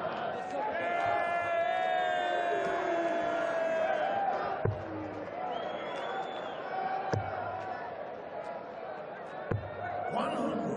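Three steel-tip darts thudding into a bristle dartboard, one about every two and a half seconds, as a player throws his visit. Under them runs steady arena crowd noise, with many voices singing early on.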